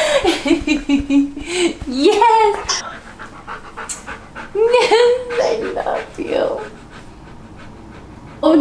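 A husky panting, with pitched, whining vocal sounds that glide up and down in two stretches, the first in the opening two and a half seconds and the second around the middle; it is quieter over the last second and a half.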